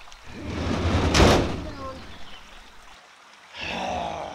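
Heavy oak post being heaved and slid up a metal ramp into a box trailer: a scraping rumble that swells to a loud knock about a second in, then fades. A shorter scrape comes near the end.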